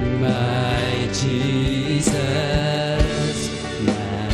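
Live worship band playing a slow song: voices singing long held notes over acoustic guitar and bass guitar, with a soft beat about once a second.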